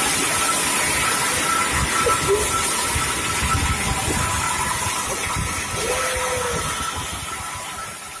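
Motorcycles running on a road, heard on a phone recording made from a moving vehicle alongside them, under a steady rush of wind and road noise.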